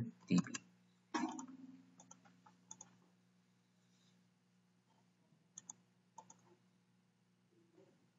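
Scattered faint clicks of a computer mouse and keyboard, the strongest a little over a second in and a pair near the end, over a faint steady low hum.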